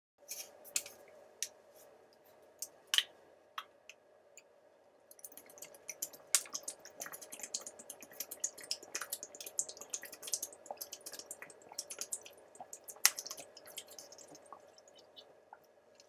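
Thin plastic water bottle crackling and clicking as a man drinks from it. A few separate clicks come first, then from about five seconds in a dense run of small crackles as the bottle flexes.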